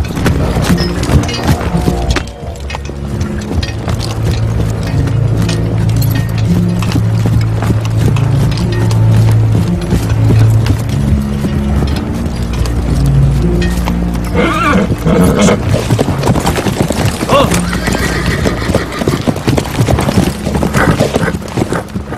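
Film soundtrack: a sustained low orchestral score over horses' hooves clip-clopping on a dirt track, with horses whinnying about two-thirds of the way through.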